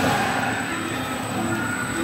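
Dark-ride car moving along its track, with a steady rolling and running noise from the moving vehicle.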